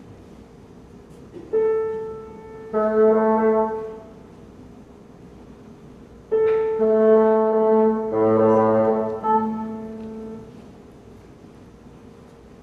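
Grand piano sounding a tuning note and a bassoon answering with held notes against it, in two short passages: the bassoonist tuning to the piano.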